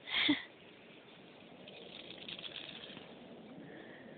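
A small dog gives one short, sharp vocal noise right at the start, then only faint crackly rustling in the grass.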